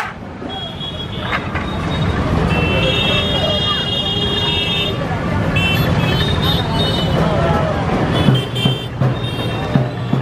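Busy street traffic with motorcycle engines running and crowd chatter. High-pitched vehicle horns sound several times: one long blast from about two and a half seconds in, then shorter honks near the middle and toward the end.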